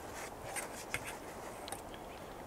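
Metal tongs clicking and scraping against a small camp frying pan as cooked shaved steak is scooped out: a handful of light clicks and scrapes over a soft background hiss.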